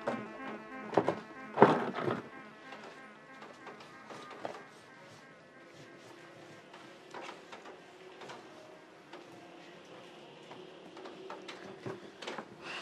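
A plastic patio chair knocking and scraping as it is set down on a hard floor, loudest about one and a half seconds in. Then a faint steady buzz with a few light clicks.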